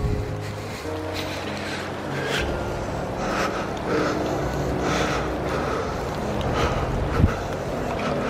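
Steady hiss of heavy rain in woodland, with footsteps on a wet, leaf-covered trail about twice a second and a single thump near the end. Faint held notes, like soft background music, sit underneath.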